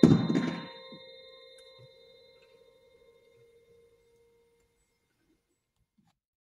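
A concert wind band's closing chord ends on one loud percussive hit. Bell-like tones ring on after it and fade away in the hall over about four seconds.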